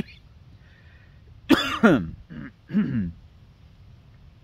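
A man laughs briefly and clears his throat in a few short vocal bursts, starting about a second and a half in.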